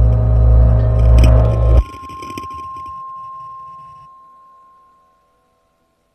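Live ambient electronic music: a loud low drone swelling and ebbing in slow pulses under layered higher ringing tones, cut off abruptly about two seconds in. A thin high tone and a faint tail linger and fade out to near silence by about five seconds in.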